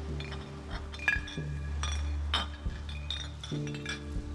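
Glass beer bottle clinking as it is handled: several sharp clinks, one with a short high ringing, over sustained background music.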